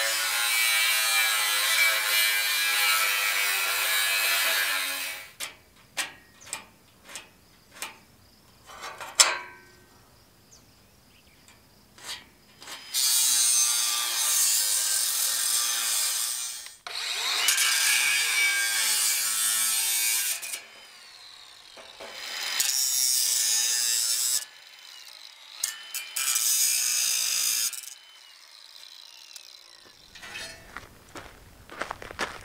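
Cordless angle grinder with a cut-off wheel cutting through the rack's thin steel tubing, in several cuts a few seconds long, each a loud whining grind. Between the first and second cuts comes a run of sharp knocks and clanks.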